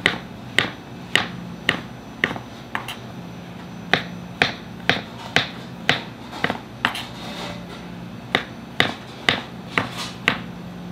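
Kitchen knife slicing whole shiitake mushrooms on a cutting board: a sharp click each time the blade reaches the board, about two a second with a short pause around three seconds in.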